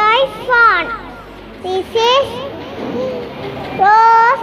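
A young child's high-pitched voice speaking several short phrases with pauses between them.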